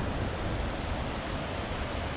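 Steady rushing noise of falling water, with wind rumbling on the microphone.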